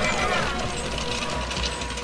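A wooden horse-drawn wagon rattling and creaking as it rolls, under soft background music with a few held notes.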